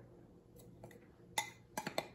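A metal fork stirring dry powdered sugar and cornstarch in a glass measuring cup. There is soft scraping, then a few sharp clinks of the fork against the glass in the second half.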